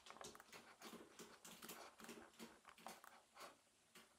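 Near silence, with faint soft clicks coming irregularly, about three or four a second.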